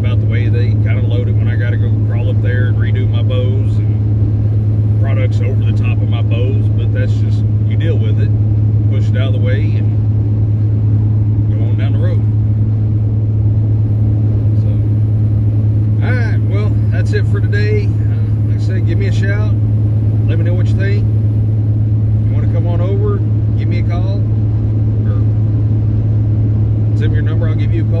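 Steady low drone of a semi truck's diesel engine and road noise heard inside the cab, with a man's voice talking on and off over it.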